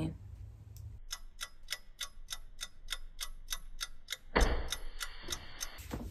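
Ticking clock sound effect, about four even ticks a second, played as a 'waiting' cue. It is followed near the end by a louder burst of noise lasting about a second and a half.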